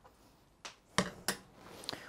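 Three light, sharp clicks about a third of a second apart, a little after the start, from handling at the stove, over faint room tone.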